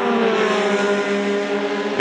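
Formula 3 single-seater race car engine running hard, its note falling slightly in pitch at first and then holding steady.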